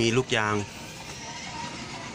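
A man speaking briefly in Thai, then a steady low background noise.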